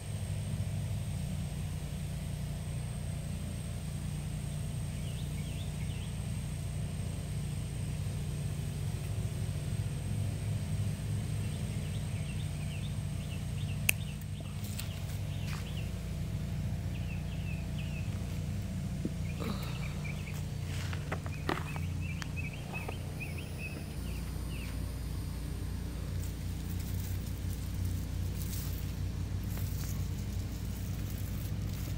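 A steady low rumble throughout, with faint high chirps of birds coming and going and a few sharp snips of pruning shears around the middle.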